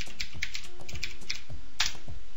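Computer keyboard keys clicking irregularly as a command is typed, with a louder keystroke near the end.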